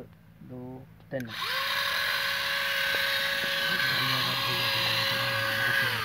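Wire-powered electric motors of two homemade toy tractors whining at high speed as they strain against each other in a tug of war. The whine rises in about a second in, holds steady, and drops off just before the end.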